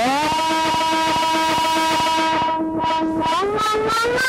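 Electronic synthesizer music: one held synth tone that slides up in pitch at the start and again about three seconds in. Its brightness dips and comes back briefly, like a filter being swept, over a steady ticking pulse.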